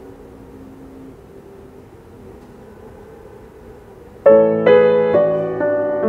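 Steinway concert grand piano: a few seconds of quiet hiss, then loud full chords struck suddenly about four seconds in, followed by more chords that ring on.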